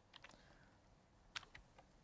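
Faint taps and clicks of a stylus writing on a tablet, the sharpest a little past halfway, over near silence.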